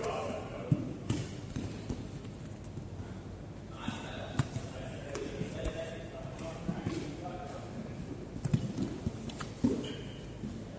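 Bodies and bare feet thudding and slapping on foam grappling mats as jiu-jitsu partners grapple, scattered thuds with a quick cluster near the end, under indistinct voices in the hall.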